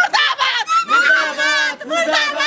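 Women shouting protest slogans at full voice, with one long, strained, quavering shout held in the middle.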